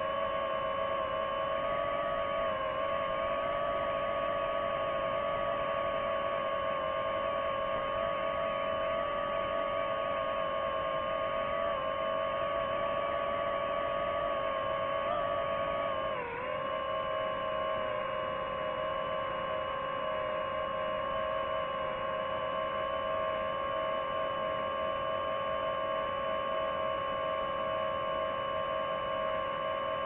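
DJI FPV drone's motors and propellers whining steadily in flight, a high, even tone with overtones. About halfway through the pitch dips briefly and settles a little lower as the throttle eases.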